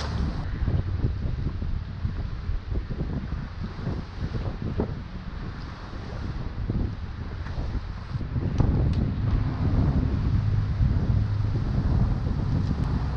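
Wind buffeting the microphone in a low, steady rumble over choppy water sloshing; it grows louder about eight and a half seconds in.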